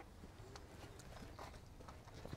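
Near silence: a faint low background rumble with a few soft, scattered clicks.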